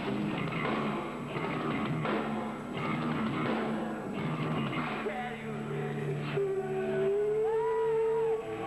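Heavy rock band playing live, with distorted electric guitars, bass, drums and vocals. About six and a half seconds in, a long held note rises above the band and wavers slightly in pitch.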